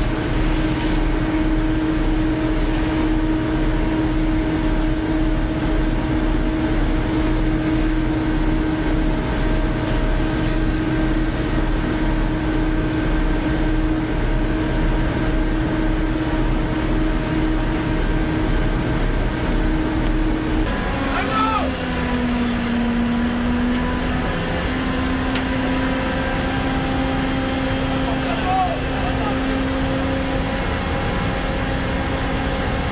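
A workboat's diesel engine running steadily with a low pulsing throb. About two-thirds of the way through, the engine note changes, dipping lower and then rising again as the throb fades.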